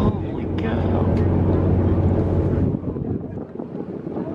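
A whale-watch boat's engine drones steadily under wind buffeting the microphone, with passengers' voices over it. The low drone drops away about three seconds in.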